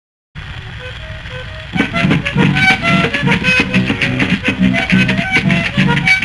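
Guitar-led vallenato intro: a quiet picked guitar line, then about two seconds in the full guitar accompaniment comes in, with rhythmic strummed chords under a picked melody.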